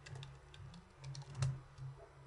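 Typing on a computer keyboard: a few light key clicks, then one louder click about one and a half seconds in.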